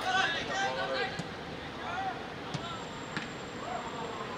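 Footballers shouting and calling to each other on the pitch, with a few sharp knocks of the ball being kicked, the last as a shot at goal. A faint high steady whine comes in over the last second and a half.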